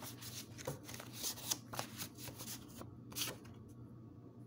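A stack of white paper cards being shuffled and handled, with a run of crisp rustles and flicks that pause briefly near three seconds in.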